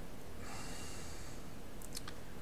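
A man breathing in during a pause in speech: a soft inhale starting about half a second in and lasting about a second, over a steady low hum. A faint click comes near the end.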